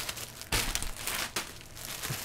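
Plastic packaging crinkling and rustling as it is handled, in a run of crackly bursts starting about half a second in and easing off after about a second.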